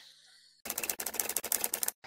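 A fast, even clatter of sharp clicks, like a typewriter, starting about two-thirds of a second in and stopping just before the end.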